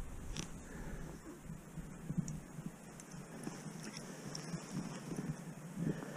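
Faint, irregular crunching and rustling of a person moving on snow-covered ice in heavy winter clothing, with scattered light ticks.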